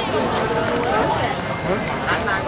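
People talking close by, with other voices chattering in the background.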